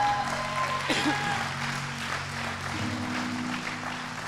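Congregation applauding over soft, sustained keyboard chords, the chord changing near the end, with a brief shout from the crowd about a second in.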